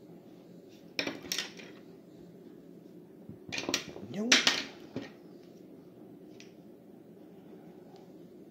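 A few short clinks and knocks about a second in and again between about three and five seconds, with a murmured 'hmm' among them about four seconds in.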